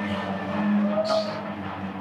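A steady low hum under faint, indistinct talk.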